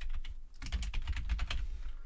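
Computer keyboard being typed on: a quick run of keystrokes, with a brief pause about half a second in.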